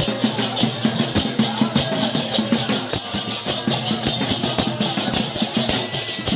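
Kirtan music led by large brass hand cymbals (jhanja), clashed in a fast, steady rhythm of several strokes a second over a steady low tone and percussion.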